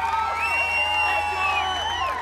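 Many overlapping high, whooping calls that glide up and down in arcs, layered over a steady low hum, as part of an album's recorded audio.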